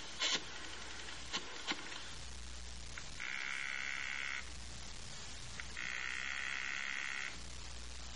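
Telephone call sound effect: a few clicks, then a buzzing telephone ring twice, each ring lasting just over a second, over a steady low hum.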